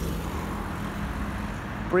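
Steady low rumble of wind buffeting a phone microphone and road noise while riding a bicycle downhill.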